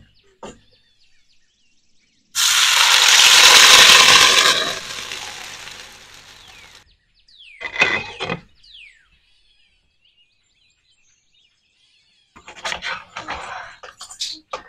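Semolina (rava) batter poured into hot oil in a nonstick frying pan: a loud sizzle starts suddenly and dies down over about four seconds. Then a glass lid is set on the pan with a short clatter, and near the end a spatula clicks and scrapes against the pan. Faint bird chirping runs underneath.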